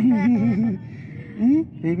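A person laughing in a quick run of about five short pulses, then a brief rising vocal sound and more laughter near the end.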